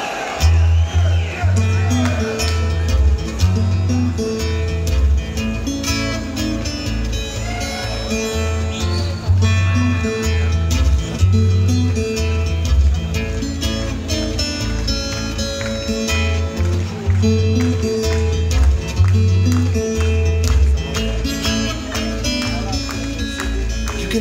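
Twelve-string acoustic guitar playing a blues intro riff live, with deep bass notes pulsing under picked higher strings, starting about half a second in.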